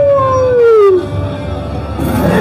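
A long wolf-like howl, held on one pitch and then sliding down, ending about a second in.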